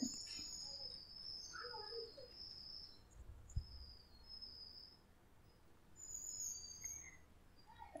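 Quiet room tone with faint, high, thin chirps coming and going, like small birds calling in the distance, and one soft low knock about three and a half seconds in.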